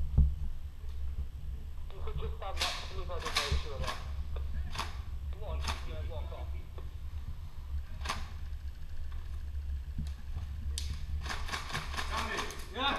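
A handful of sharp single cracks from airsoft guns, spread irregularly, with faint far-off shouting voices, over a steady low rumble.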